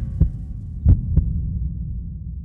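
Two pairs of deep thumps, like a heartbeat, over a low steady hum.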